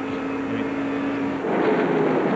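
Stock car V8 engine heard through an in-car camera, holding a steady drone at racing speed. About a second and a half in, it cuts to a louder, noisier wash of racing engines from the track.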